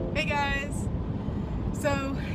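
Steady low road and engine rumble inside a moving car's cabin, with a brief burst of voice in the first second.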